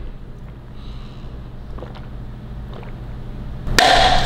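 Steady low hum, with a few faint small ticks and a short loud burst of noise near the end.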